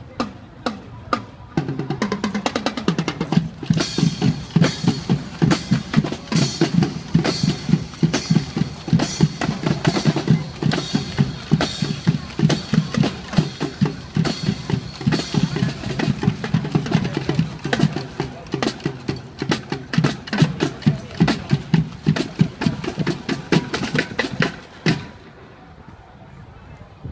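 High-school marching band playing, its drums loudest: a fast, regular beat of snare and bass drums over low pitched notes. It starts after a few sharp clicks, comes in fully about two seconds in, and stops a second before the end.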